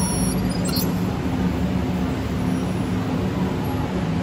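Steady low hum of ride machinery in the Test Track loading station, heard from a stationary ride vehicle waiting to be dispatched. A faint high electronic tone sounds briefly at the start.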